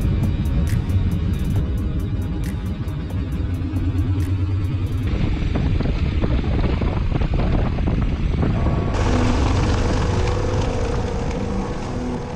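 Motorcycle engine running with road and wind noise, mixed under background music. The noise gets brighter about five seconds in and again about nine seconds in.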